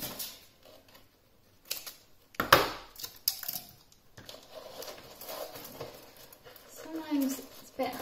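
Cardboard and sticky tape being handled as a card box is taped together: scattered rustles and short scrapes, the loudest about two and a half seconds in.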